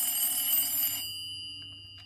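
Desk telephone ringing, a steady high ring fading away over the two seconds.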